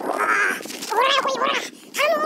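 A man's wordless, silly vocal calls: a short cry, then about a second in two loud cries that rise and fall in pitch.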